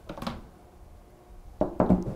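Handling knocks from a coated-steel battery hold-down frame being gripped and shifted on a tabletop. There is one light click about a quarter second in, then a short cluster of sharper knocks near the end.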